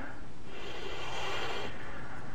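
A man's long breath out, likely through the nose, during a pause in speech, over a steady background hiss.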